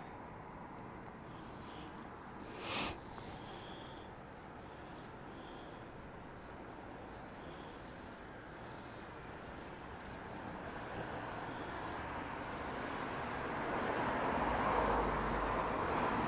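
Night street ambience: intermittent high-pitched chirping with a single sharp click about three seconds in, then a rising rush of street traffic that grows loudest near the end.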